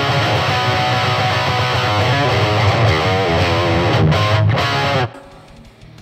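Distorted electric guitar riff played through a Peavey Vypyr 15, a 15-watt digital modelling amp, on a high-gain rock/metal preset. The playing stops abruptly about five seconds in.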